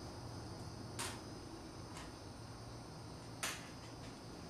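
Two faint, short clicks about two and a half seconds apart, as quarter-inch nuts are set into a table saw's miter slot, over a low steady hum.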